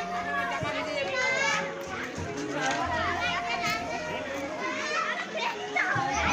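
Children playing and calling out, many high voices overlapping.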